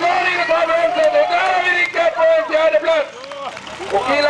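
A man's excited race commentary, the words unclear, with a tractor engine running faintly underneath.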